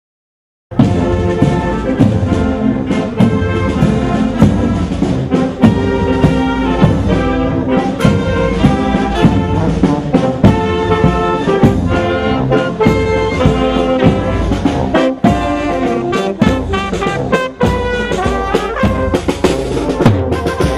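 Brass band music with trumpets and trombones over a steady drum beat, cutting in abruptly about a second in.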